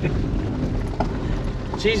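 Car cabin noise on a rough, potholed lane: a steady low rumble from the tyres and suspension, with a light knock about a second in.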